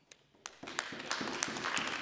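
Members of parliament applauding. A few separate claps about half a second in build into steady applause.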